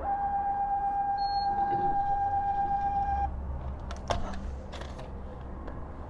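A gas pump's electronic tone held steady for about three seconds, then cutting off. It is followed by a few light clicks and paper rustles as the pump's receipt comes out and is handled.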